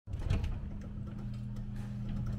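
Electric garage door opener running as a sectional garage door lifts, a steady motor hum with a short rattle and knock just as it starts.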